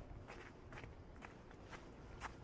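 Faint footsteps of a person walking on a wet, slushy and icy winter sidewalk, about two steps a second.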